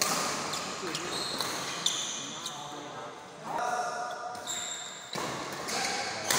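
Badminton rally: sharp racket strikes on the shuttlecock, with shoes squeaking briefly on the court floor. A voice calls out about midway.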